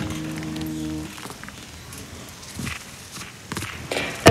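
The tail of a sustained sung note from an a cappella vocal track, ending about a second in, then a quiet gap with a few faint clicks and short noises before the next line.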